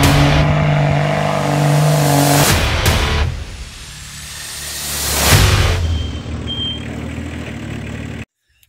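Vehicle engine mixed with intro music. A swelling whoosh peaks in a sharp hit about five seconds in.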